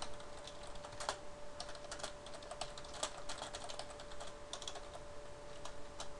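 Computer keyboard being typed on: a quick, irregular run of key clicks as a line of text is entered.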